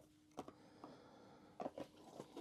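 Faint handling noise on a tabletop: a few soft taps as a paper leaflet and a small plastic camera are moved and set down, over a faint steady hum.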